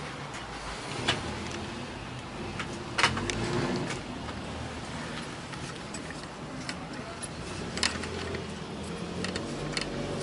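Handling a tripod while a laser level is screwed onto its head: a few sharp plastic-and-metal clicks and knocks, the loudest about three seconds in, with smaller ticks between. A steady low hum runs underneath.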